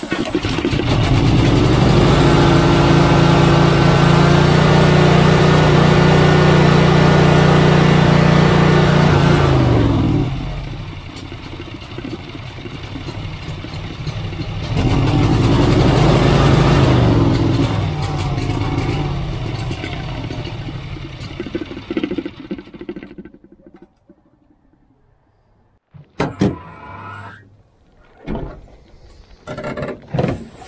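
Walk-behind commercial mower's engine catching and running at high throttle, dropping back about a third of the way in, revving up once more and then winding down and stopping. It is burning oil and smoking, which the mechanic put down to too much oil in the engine.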